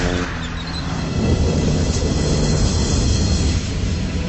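Loud, steady rumbling sound effect with a low drone beneath it: the fictional Howler machine at work as it projects its beam of light.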